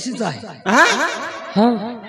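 A man's voice, wordless: a drawn-out exclamation about halfway through, then a few quick chuckling syllables near the end.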